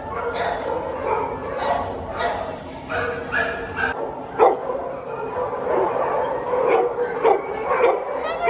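Several shelter dogs barking and yipping over one another in the kennels, with sharp single barks about halfway through and a few more near the end. Voices of people murmur in the background.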